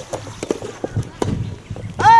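Several irregular sharp knocks of soft tennis balls being struck and bouncing on the courts, with faint voices in the background.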